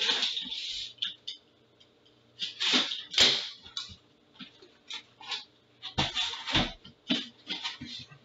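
Sealed cardboard shipping case being handled and opened: scraping and rubbing of hands on cardboard in short bursts, with dull thumps about three and six seconds in as the case is turned over and set back on the table.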